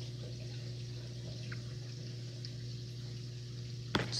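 Reef aquarium's circulation running: a steady low pump hum with water trickling and moving, and a single sharp click near the end.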